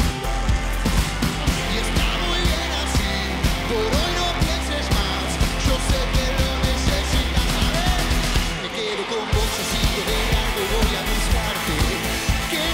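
Live pop-rock band playing with a steady drum beat and a voice over the music. The low end and cymbals drop out briefly about nine seconds in, then the full band comes back.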